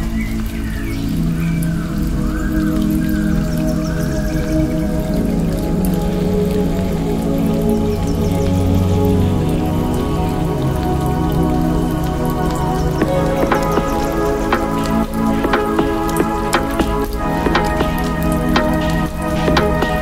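Runway show music: held low tones and chords over a steady bass. About two-thirds of the way through, a dense patter of short clicks joins in.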